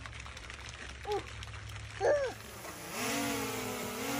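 Small quadcopter drone hovering close by: a steady buzzing hum of several pitches that sets in about three-quarters of the way through. Before it come two short high voice sounds.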